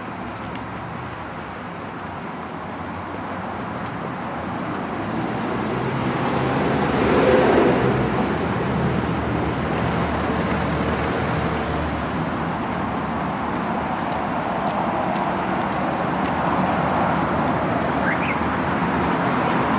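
City road traffic: a steady wash of tyre and engine noise, with a vehicle passing close that is loudest about seven seconds in.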